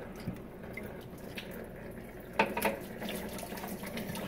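Coolant pouring in a steady stream from the open engine-block drain of a Toyota 1FZ-FE engine into a drain pan. A couple of sharp clicks come about two and a half seconds in.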